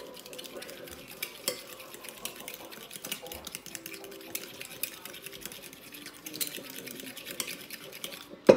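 Spoon stirring ketchup and brown sugar in a glass bowl, a steady run of small quick clicks and scrapes against the glass as the sugar is mixed in to dissolve.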